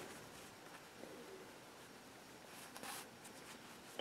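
Near silence: room tone, with a faint brief rustle about three seconds in.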